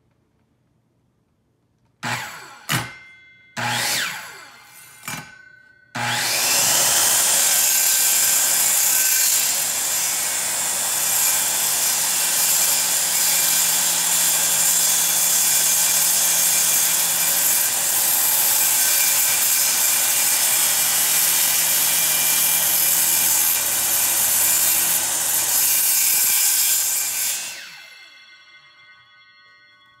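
A DeWalt corded circular saw blipped a few times, each short burst of the motor dying away, then run steadily for about twenty seconds as it crosscuts a pine board, before the motor winds down. This is one pass cut only partway across the board, stopped short of the far edge so the wood won't splinter; the cut is to be finished from the other side.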